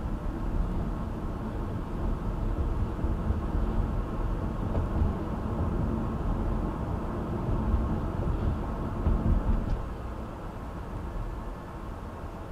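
Steady low rumble of road and tyre noise with the car's engine, heard from inside the cabin while cruising at about 30 mph. It gets a little quieter in the last two seconds.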